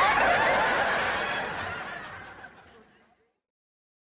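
Audience laughing after a comedian's punchline, fading away to silence about three seconds in.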